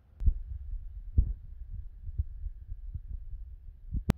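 Low rumbling handling noise with soft thumps, about one a second, while the plastic toy figure on its base is turned. A sharp click comes at the very end.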